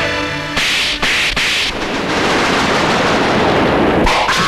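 Action-film soundtrack: background music breaks off a little after half a second into three short, loud noisy bursts in quick succession, like gunfire or fight impacts. A dense, steady hiss follows.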